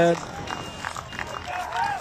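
A man's commentary voice finishing a word, then a lull with only faint outdoor background noise, and a short voiced sound near the end.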